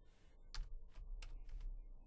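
Typing on a computer keyboard: about half a dozen quick, faint keystrokes, starting about half a second in.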